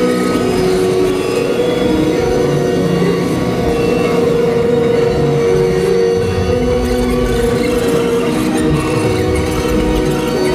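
Live experimental electronic music played through a venue PA: steady held drone tones over a dense, rumbling low texture, with no beat.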